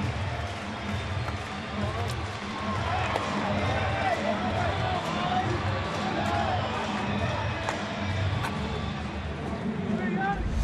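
Baseball stadium crowd noise: a large crowd cheering and chattering as a home run scores, with music playing over the stadium sound system.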